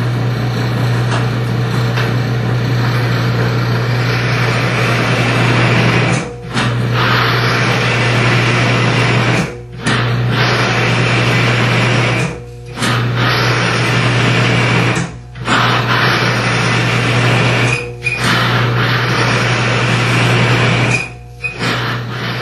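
Cross-axis friction test machine running: its electric drive motor hums steadily while the steel test bearing grinds against the race under torque-wrench load, the synthetic oil breaking down from the friction. The sound cuts out briefly six times, about three seconds apart, with a faint squeal near the end.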